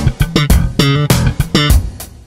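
Electric bass played slap style: a one-bar slap bass riff, a quick run of about ten sharply attacked, percussive notes.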